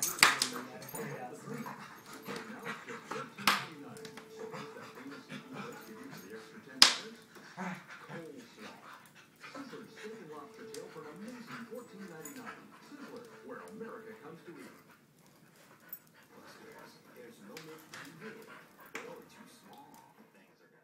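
Two dogs, a Corgi/Spaniel mix and a Nova Scotia Duck Tolling Retriever, playing rough together and making small vocal sounds throughout. There are three sharp, loud yelps: one at the start, one about three and a half seconds in and one about seven seconds in.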